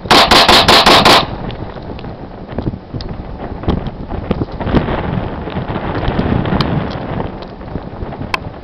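Colt 1911 .45 pistol fired in a rapid string, about six loud shots in just over a second.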